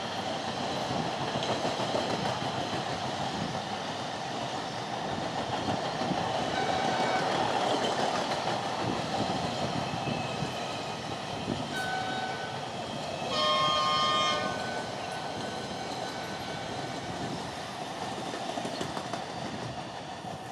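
Coaches of an Indian Railways express train passing at speed: the steady rumble and rattle of wheels on rail. A train horn sounds for about a second just past the middle, the loudest moment.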